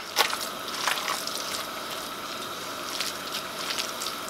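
Bare hands squelching and mashing a wet mix of grated beetroot, rice and black beans in a plastic bowl, with a few short squishes over a steady background hiss.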